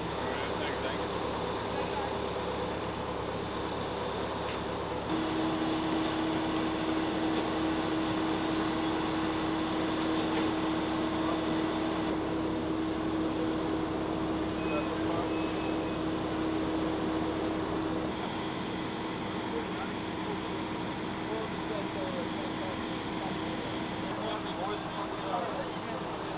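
Steady machinery hum from aircraft and ground equipment on an airport apron, carrying a steady tone that grows stronger about five seconds in and eases about eighteen seconds in, under indistinct talk from the soldiers.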